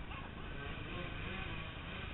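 Dirt bike engines idling, a low steady rumble.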